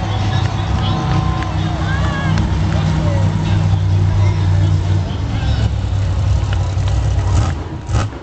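Monster Mutt Dalmatian monster truck's supercharged V8 running with a steady low drone, which drops away about seven and a half seconds in. Voices and crowd noise sit over the engine.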